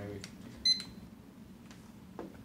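Handheld barcode scanner giving one short, high-pitched beep as it reads the barcode on a packet of potato crisps, the signal of a successful scan.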